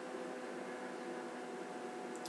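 Steady faint hiss with a low electrical hum: room tone, with no distinct event.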